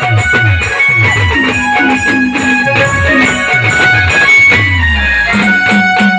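Loud live band dance music: a plucked-string melody over a steady beat of deep drum strokes that drop in pitch, about two a second, with a longer falling bass note near the end.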